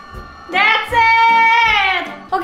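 A high-pitched voice singing one long held note, with a faint regular beat underneath.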